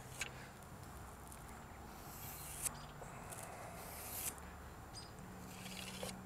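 Faint handling sounds with a few soft taps, as a square and marker are worked against the end grain of a white oak log.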